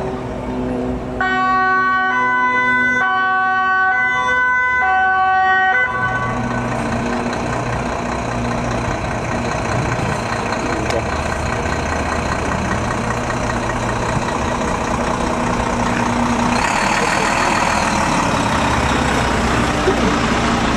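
Fire truck's two-tone siren alternating between two pitches for about five seconds, then cutting off. After that the Volvo fire truck's diesel engine runs as it pulls away, with road noise swelling near the end as a large truck goes past.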